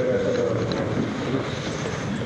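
Muffled rumble and handling noise from a concealed camera's microphone as it is moved, with faint indistinct voices in a large room beneath it.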